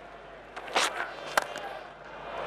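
Cricket stadium crowd murmuring, with a brief noisy burst just under a second in and then a single sharp crack of bat on ball about a second and a half in as the batsman hits the delivery.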